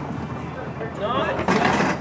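Candlepin bowling alley din: background voices over a steady noise of the alley, with a sudden louder burst of noise about one and a half seconds in.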